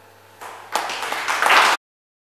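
Audience applauding: the clapping starts softly, swells about three-quarters of a second in, and cuts off suddenly near the end.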